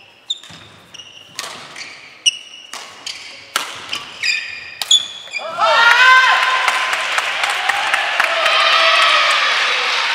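Badminton rally: sharp racket strikes on the shuttlecock, about eight in five seconds, with short sneaker squeaks on the wooden court floor. After about five and a half seconds, once the point is over, a group of voices breaks out in loud, sustained shouting and cheering.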